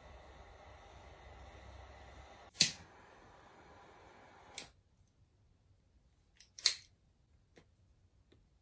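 A handful of sharp clicks. The loudest comes about two and a half seconds in, a weaker one near five seconds, and a close pair near seven seconds, all over faint room hiss that drops away about halfway through.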